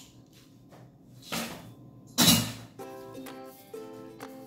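Crushed ice poured from a metal scoop into a highball glass: two short rattling rushes, about a second in and then a louder one past the middle. Light ukulele background music comes in near the end.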